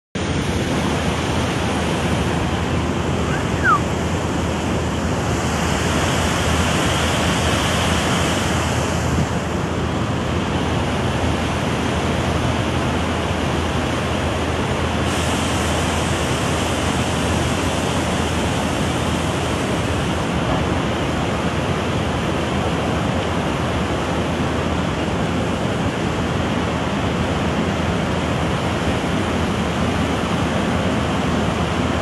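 Steady rushing noise of a fast-flowing river, running evenly throughout.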